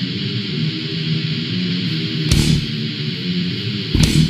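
Death metal recording: a distorted guitar riff over cymbals, with an accented hit a little past halfway.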